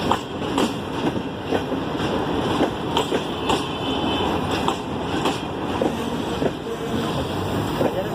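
Green Line express passenger coaches rolling past close by, with steady rumbling wheel noise and irregular sharp clacks as the wheels pass over rail joints.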